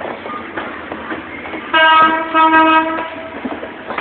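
Horn of a GM GT22 diesel locomotive sounds two short blasts in quick succession, starting nearly two seconds in. The train's coaches clatter steadily underneath as they roll past over the rail joints.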